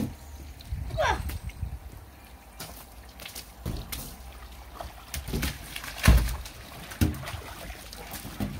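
Water splashing and slapping on a plastic slip and slide as a child runs and slides along it, with several sharp wet splats, the loudest about six seconds in.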